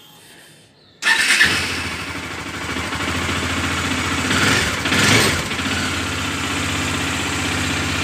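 Bajaj Dominar 400's single-cylinder engine starting up about a second in, just after a fresh oil and filter change, and settling into a steady idle that swells briefly about four seconds in. The engine sounds good to the owner.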